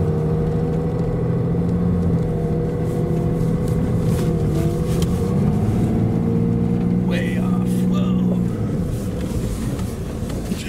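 Ram 2500's Cummins diesel engine pulling under load, heard from inside the cab. Its pitch rises about five seconds in as the throttle comes up, holds, then eases back near the end.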